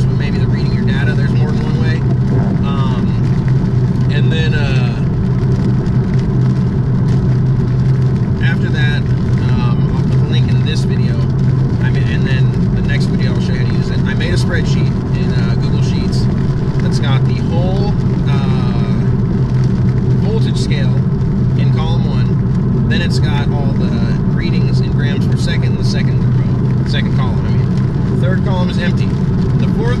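Steady low drone of engine and road noise inside the cabin of a 2017 Honda Civic EX-T with the 1.5T engine, driving at steady speed, with a man talking over it.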